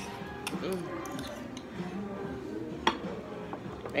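Metal spoon clinking against a ceramic bowl of grits: a few light clicks and one sharper clink about three seconds in, over background music.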